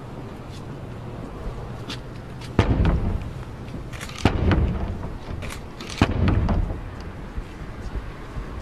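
Three heavy knocks on the closed cathedral door, evenly spaced about a second and a half apart, each booming briefly before it dies away.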